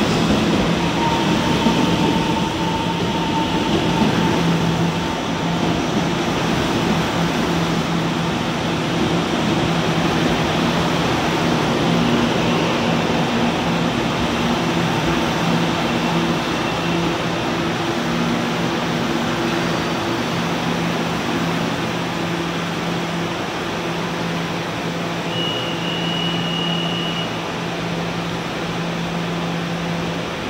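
Taiwan Railway EMU700 electric multiple unit coming to rest at the platform and then standing, its onboard equipment humming steadily under a constant hiss. A faint tone from the final braking fades out in the first few seconds, and a short high beep sounds about 25 seconds in.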